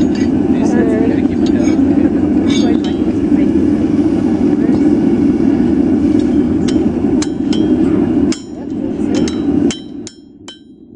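Steel hammer and tongs clinking on an anvil as hot iron is shaped. The sharp metallic strikes ring briefly and come several times in the last few seconds, over a steady rushing noise.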